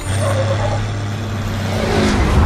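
Armored truck engine running with a steady low drone as the truck pulls away, growing louder toward the end as it drives over.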